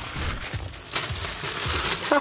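Plastic wrap of a multipack of toilet paper crinkling and rustling as it is handled and rolls are pulled out.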